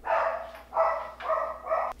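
A dog barking four times in quick succession.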